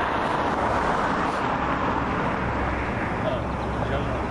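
Road traffic noise: a vehicle passing on a nearby street, a steady rushing sound that is strongest in the first half and eases slightly toward the end.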